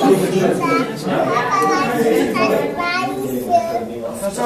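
Several children talking and calling out at once, overlapping chatter of voices.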